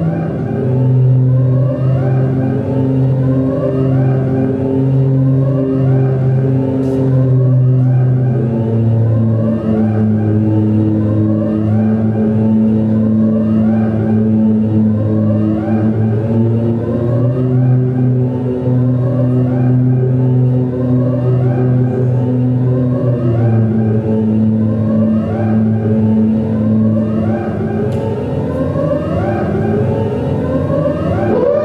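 Electronic drone music: sustained low tones shift to new pitches every few seconds under a rising swoop that repeats about once a second.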